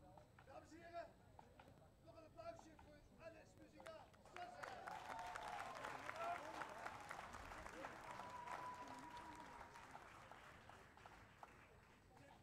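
Faint, distant applause from a crowd, swelling about four seconds in and slowly fading away near the end, with faint voices before it.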